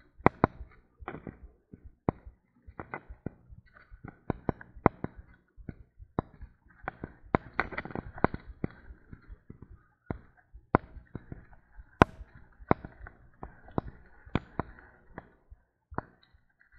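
Sharp, irregular knocks and rattles, several a second, from a loaded touring bicycle jolting over a rough dirt track.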